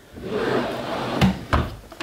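A drawer of a white IKEA storage unit, loaded with plastic jars of acrylic dipping powder, sliding shut on its runners and closing with a couple of knocks about a second and a half in.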